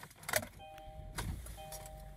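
Kia Sportage's 2.4-litre four-cylinder engine being started with the key: a few clicks, then the engine catches about a second in and settles into a low idle. A two-note warning chime sounds twice from the dash, about a second apart.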